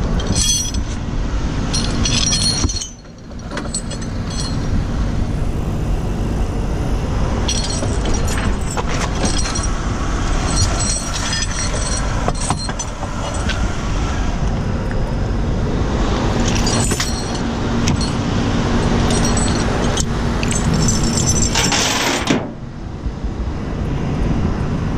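Vehicle engine idling with a steady low rumble, overlaid with many light metallic clinks and rattles. The sound drops away briefly about three seconds in and again near the end.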